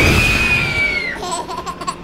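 A young child's voice from the pram: one long high squeal that rises, holds and falls, then a few short giggles near the end.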